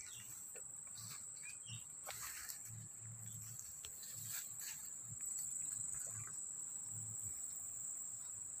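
A steady, high-pitched insect chorus, with faint scattered rustles and soft footsteps through brush.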